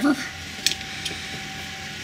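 Hands handling insulated wires and a connector on a workbench, with one small click about two thirds of a second in, over a faint steady hum.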